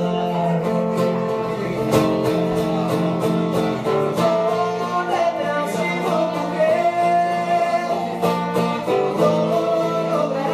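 Live acoustic band music: strummed acoustic guitar under a saxophone melody, with a man singing in Spanish.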